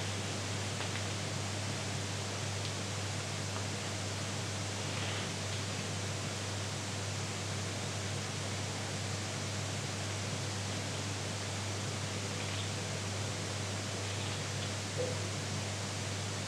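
Room tone: a steady low hiss with a faint constant hum underneath.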